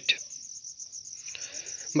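Crickets chirping steadily in the background, a high-pitched rapid pulsing trill.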